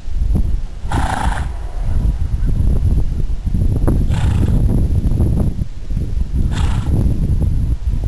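Paso Fino stallion making three short calls: one about a second in, one about four seconds in and one near seven seconds. A steady low rumble runs underneath.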